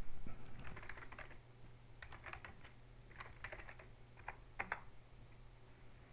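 Typing on a computer keyboard: several short bursts of keystrokes with brief pauses between them.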